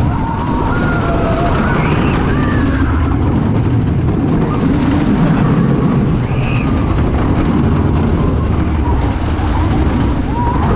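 Wooden roller coaster train rumbling along its wooden track at speed, with wind buffeting the microphone. Riders give short shouts about two seconds in and again just past six seconds.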